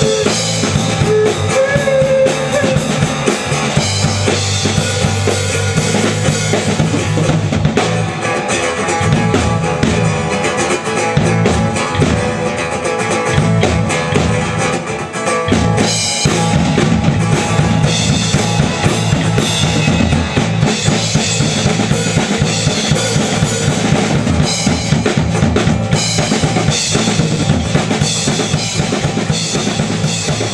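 Live band playing without singing: drum kit, electric bass and amplified acoustic guitar over a steady beat. The sound grows fuller and brighter about halfway through.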